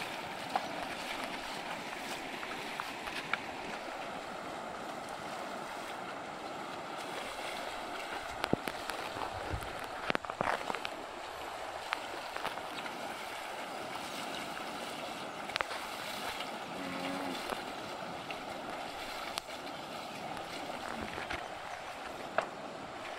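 Shallow, stony river water running steadily, with cattle wading through it: every few seconds a hoof splashes or knocks on the stones.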